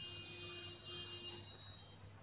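A faint, steady high-pitched tone of several pitches held together in the background, cutting off near the end, over a low hum.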